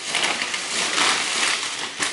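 Thin plastic carrier bag rustling and crinkling steadily as hands rummage inside it and draw out a plastic snack packet.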